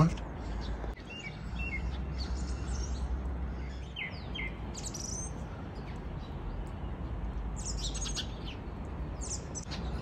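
Small birds chirping and calling in short scattered notes, some gliding downward, over a steady low background rumble.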